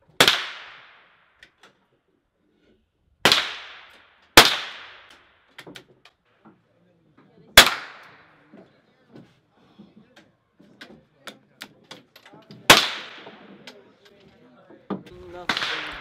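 Five rifle shots fired on a range firing line, spaced unevenly: one at the start, two close together about three to four seconds in, one near eight seconds and one near thirteen. Each is a sharp crack with a short ringing tail, with faint small clicks in the gaps between.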